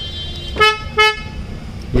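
The Hyundai i20's horn chirps twice in quick succession, the signal of the car being unlocked with the remote key.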